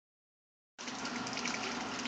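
Water running steadily from a garden hose, starting a little under a second in.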